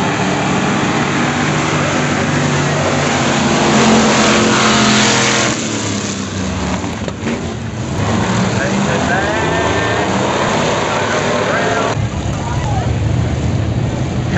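Engines of a pack of dirt-track stock cars running together around the oval, loudest as they pass close about four seconds in, then dropping back a little after about five and a half seconds.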